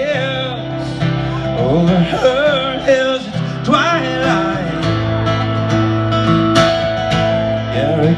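Live acoustic guitar and male singing amplified through a PA, with sung vocal phrases rising and falling over the strummed guitar.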